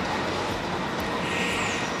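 Steady city background noise: a low, even traffic-like rumble with a faint hum, slightly rising near the end.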